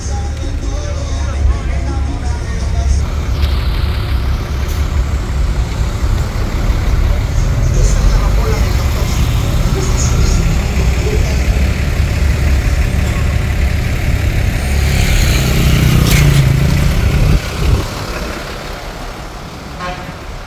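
Steady low rumble of vehicle and street traffic noise. It swells to a louder rush from about fifteen to seventeen seconds in, then drops off near the end.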